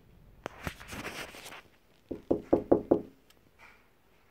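A click and a brief rustle, then five quick, ringing knocks on a hard surface close to the microphone, about five a second.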